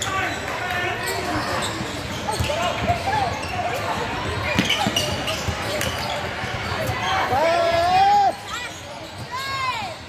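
Basketball being dribbled on a hardwood gym floor during play, amid shouting voices of players and spectators in a reverberant gym. One loud sustained shout comes a little before the end, followed by short high squeaks of sneakers on the court.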